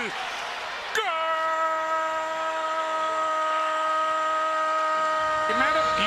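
A football TV commentator's drawn-out goal call, one steady held "goool" note lasting about five seconds, starting about a second in over crowd noise. A second voice starts talking over it near the end.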